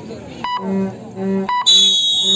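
Referee's whistle blown in one loud, long blast near the end, its pitch sagging slightly. Before it, short beeps about once a second and a low tone that sounds in short repeated pulses.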